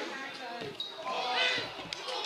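Players shouting on an outdoor football pitch, with a football being kicked: a dull thud about two-thirds of a second in and a sharper knock near the end.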